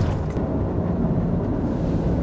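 Steady low road and engine rumble inside a moving car's cabin, heard from the rear seat.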